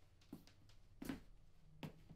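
Near silence in a quiet room with three soft footsteps on a floor, about one every three-quarters of a second, the middle one the loudest.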